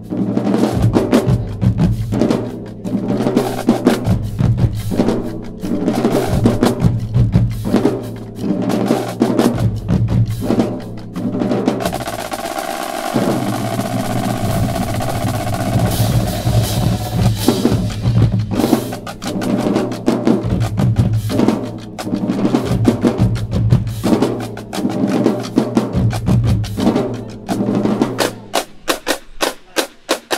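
Marching drumline of snare drums, tenor drums, bass drums and cymbals playing a fast cadence. From about twelve to eighteen seconds in the rapid strokes merge into a held roll, then the rhythmic hits resume, with sharp separate hits near the end.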